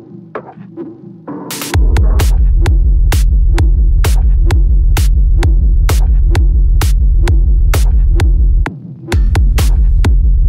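Dark techno track: a sparse stretch of hi-hats and percussion without bass, then a short noise sweep and a heavy, throbbing bass line dropping in just under two seconds in. Steady hi-hats run on top. The bass cuts out briefly near the end and comes back.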